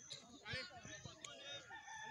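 A rooster crowing: one long, steady, held call that begins near the end, with faint distant shouting voices and a few soft thuds.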